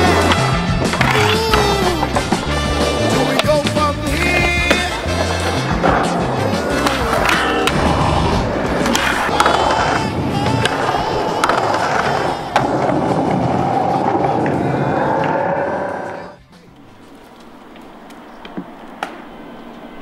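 Soundtrack song with singing and a beat, mixed over skateboard sounds: urethane wheels rolling on concrete and board clacks. About sixteen seconds in the music cuts off, leaving quieter raw skate-spot sound with a few sharp clicks.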